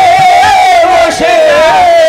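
Kirtan singing: voices holding one long, loud, high note that wavers slightly in pitch.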